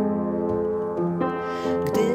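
Out-of-tune upright piano played in a few slow chords, accompanying a lullaby.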